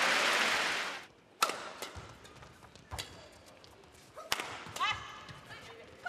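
Crowd applause that fades out about a second in, then a badminton rally: three sharp racket strikes on the shuttlecock, about a second and a half apart.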